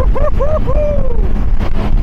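A man whooping excitedly, three quick rising-and-falling yells in the first second, the last drawn out, over the steady low rush of a powerboat running at speed with wind on the microphone.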